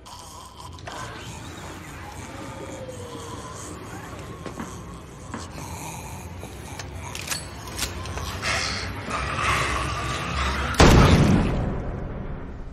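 Film sound mix: a steady low rumble of ambience with a few scattered knocks and clicks, then a sudden loud boom about eleven seconds in that fades over about a second.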